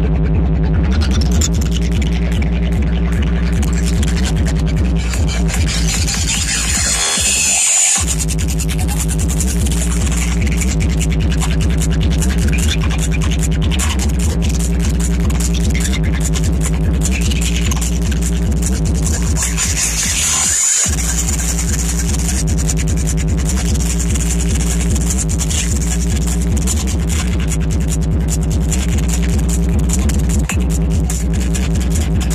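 Electronic dance music from a DJ set played loud over a large outdoor sound system, with a heavy steady bass line. About seven seconds in, a rising sweep builds and the bass cuts out for a moment before dropping back in. The bass cuts out briefly again about twenty seconds in.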